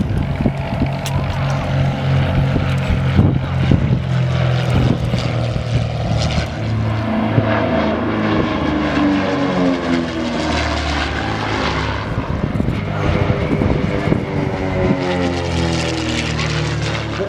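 Britten-Norman Islander's twin propeller engines droning through a display pass, with the pitch of the drone falling as the aircraft passes overhead about halfway through.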